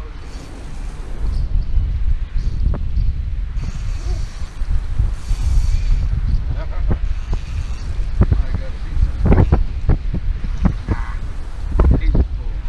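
Wind buffeting the camera's microphone in a steady low rumble, with a few short sharp clicks or knocks scattered through it.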